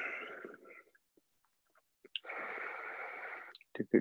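A man taking slow, deep breaths close to the microphone. A breathy sound fades out within the first second, and a longer, steady breath of about a second and a half begins about two seconds in.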